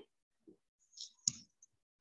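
A few faint computer mouse clicks against near quiet, the loudest a single sharp click a little past halfway.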